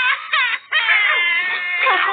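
A high-pitched voice crying and whining like a small child, in long wavering wails.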